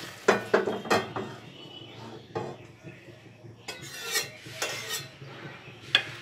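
Kitchen dishes and metal utensils clinking and knocking: three quick knocks within the first second, scattered clinks and scrapes after, and a sharp click at the end.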